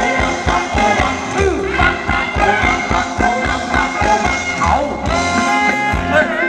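Live band playing a Thai ramwong dance song through a PA loudspeaker, a melody over a steady, regular beat.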